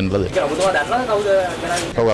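Speech only: a man talking to reporters in Sinhala.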